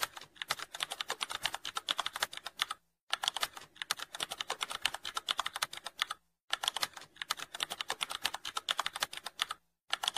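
Keyboard typing sound effect: rapid, dense key clicks in runs of about three seconds, broken by brief pauses.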